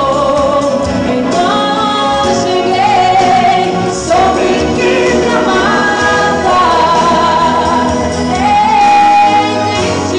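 A woman singing a gospel song into a microphone over instrumental accompaniment, holding long notes and gliding between pitches.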